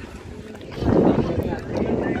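Wind buffeting the microphone, setting in with a loud rumble about a second in, with people's voices in the background.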